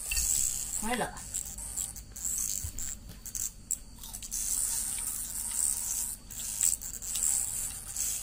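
A steady high-pitched chorus of night insects, with a short vocal sound about a second in.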